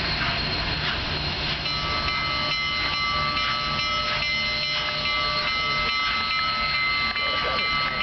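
Union Pacific 844's steam whistle sounding one long chord-like blast, starting about two seconds in and lasting nearly six seconds, over the low rumble of the approaching steam locomotive.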